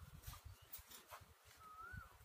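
Near silence: a faint low rumble, with a single short bird whistle that rises and then dips, near the end.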